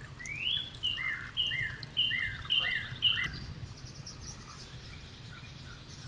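A songbird singing a clear whistled song: one rising note, then about five quick repeated two-note phrases, each a high note followed by a lower falling one, ending about three seconds in.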